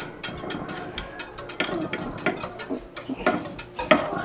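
Wire whisk stirring water, polymer crystals and food coloring in a glass quart jar, its wires clicking and rattling irregularly against the glass.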